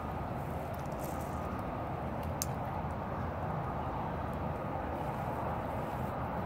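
Steady outdoor background rumble, with a couple of faint clicks.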